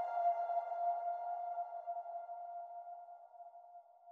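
Background music ending on one long held note with overtones, slowly fading out to silence near the end.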